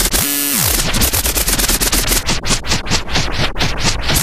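Electronic dance music break in a vixa DJ mix: the bass drops out and a falling pitch sweep comes in about a second, then a noisy drum roll speeds up steadily, building back to the full beat.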